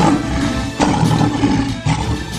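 A male lion roaring, with a second surge under a second in, over background music.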